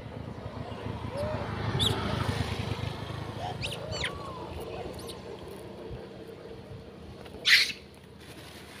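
A motorcycle passing on the road, its engine sound swelling and then fading over the first few seconds, with several short, high squeaky calls from a troop of long-tailed macaques. A sudden short burst of noise near the end is the loudest moment.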